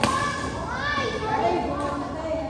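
A badminton racket strikes a shuttlecock with a sharp crack at the very start, followed by children's voices calling out during the rally in a large hall.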